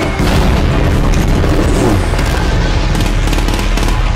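Loud war-film battle effects, booms and rapid gunfire, over dramatic trailer music, starting abruptly just after the opening moment.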